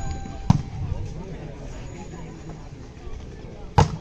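Volleyball being struck by hands and arms during a rally: a sharp hit about half a second in and a louder one near the end as a player attacks at the net, over a steady murmur of spectators' voices.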